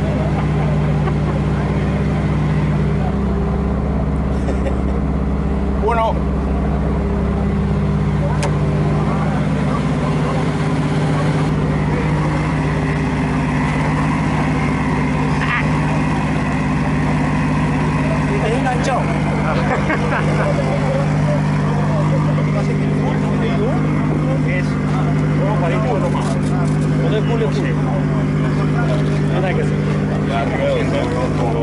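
A car engine idling steadily, with indistinct voices of people talking in the background.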